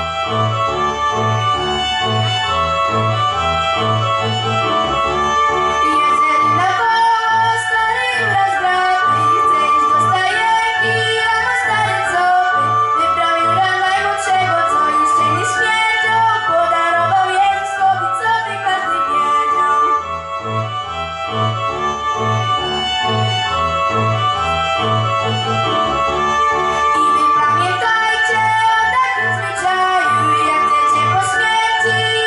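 A girl singing a Polish Christmas carol into a microphone over backing music with a steady low beat; the voice comes in after an instrumental opening of several seconds.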